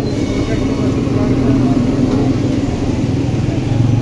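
Busy street ambience: a steady mix of crowd voices and motor-vehicle engine noise from traffic, with no single sound standing out.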